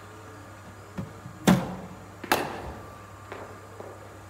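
A cricket ball fired from a bowling machine and struck by the bat: two sharp knocks less than a second apart, the first the loudest, then two faint knocks as the ball runs on.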